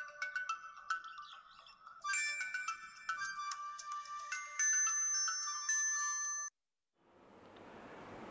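Mobile phone ringtone playing a short electronic melody, cut off abruptly about six and a half seconds in.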